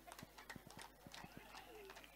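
Near silence: room tone with faint voices in the background and a scattering of light clicks.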